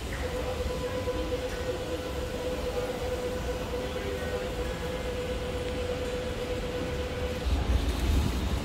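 Light-rail tram passing along street track: a steady low rumble with a steady mid-pitched hum over it. The hum stops a little before the end, as the rumble grows louder with a second tram arriving.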